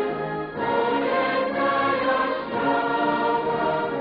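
A choir singing a slow liturgical hymn in long, held phrases, with short breaks between phrases about half a second in and again about two and a half seconds in.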